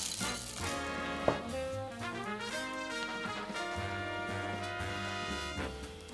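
Background music: an upbeat swing-style tune led by brass over a moving bass line, with a single short click about a second in.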